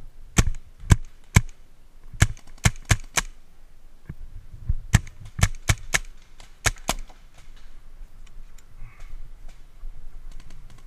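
Paintball markers firing single shots, about a dozen sharp cracks in quick groups of two to four over the first seven seconds, then only faint distant ticks.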